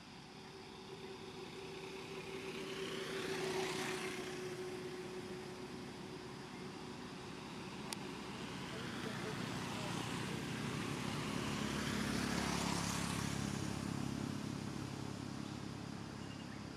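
Two road vehicles pass one after the other, each swelling and then fading, the second with a lower engine note. There is a single sharp click midway.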